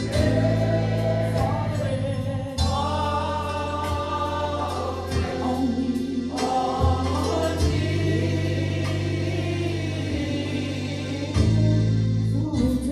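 Gospel singing with electric keyboard accompaniment. Held bass notes change every second or two beneath the voices.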